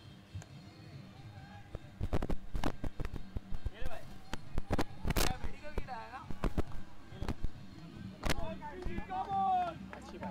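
Irregular sharp knocks and claps during a cricket delivery, among them a bat striking the ball, with short shouted calls from the players.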